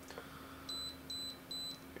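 Sharp EL-5500III (PC-1403) pocket computer's built-in buzzer sounding three short high-pitched beeps about 0.4 s apart, starting a little under a second in. The beeps signal the end of the BASIC program that has just run.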